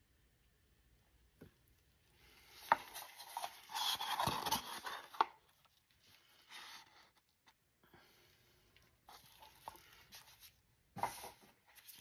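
Wooden stir stick scraping the inside of a paper cup to get the last of the epoxy resin out: a few seconds of scraping with light knocks, then fainter scrapes and taps.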